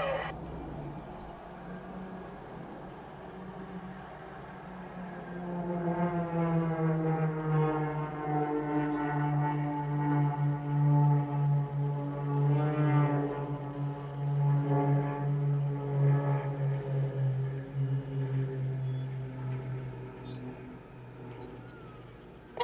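Piston propeller engines of a four-plane aerobatic formation droning overhead, heard from inside a car. The drone grows louder from about a quarter of the way in, dips slightly in pitch as it builds, holds through the middle and fades near the end.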